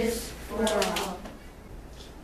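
A group of children reciting the closing words of the Pledge of Allegiance in unison, their voices stopping a little over a second in, followed by quiet room tone.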